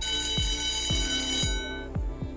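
Timer-expiry alarm sound effect: a bright, bell-like ring with many overtones that starts as the countdown runs out and fades away over about a second and a half. Under it, the countdown's low ticking thumps continue about twice a second.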